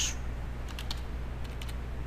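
Computer keyboard: a quick run of about half a dozen keystrokes as a short word is typed, over a steady low hum.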